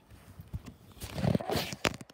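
Handling noise from a handheld camera being moved about against fabric: rustling and knocks, louder in the second half, with a sharp click near the end.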